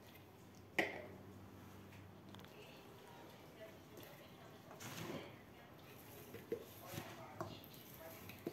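Faint handling sounds of a small clear bottle and its plastic sifter cap: one sharp click about a second in, then soft rustling and a few light clicks.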